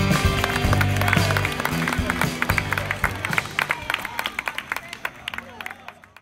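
A live rock band's last chord ringing out through the PA. After about a second and a half it gives way to an outdoor audience clapping, and everything fades out toward the end.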